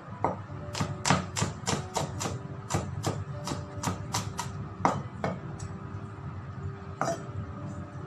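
Chef's knife chopping garlic cloves on a wooden cutting board: a quick run of about fifteen chops, roughly three a second, that stops a little after five seconds, with one more chop near the end.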